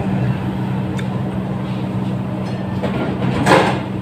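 Steady low machine hum, with a short rushing noise about three and a half seconds in.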